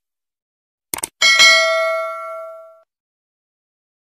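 Two quick mouse-style clicks about a second in, then a bright bell ding with several ringing tones that fades out over about a second and a half: a subscribe-button click and notification-bell sound effect.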